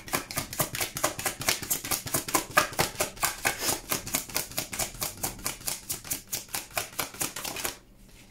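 A tarot deck being shuffled overhand: a quick, even patter of card slaps, about six a second, as packets of cards drop from one hand onto the other. The shuffling stops just before the end.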